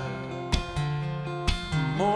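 Steel-string acoustic guitar played live, holding a chord and strummed twice, about a second apart, in a gap between sung lines.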